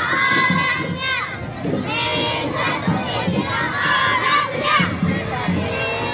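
A marching group of children and women shouting a chant together over crowd noise. Their drawn-out cries fall away about a second in and again near the end.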